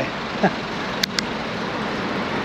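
Steady traffic and wind noise heard from a bicycle moving along a roadside path, with a brief laugh near the start and two sharp clicks just after a second in.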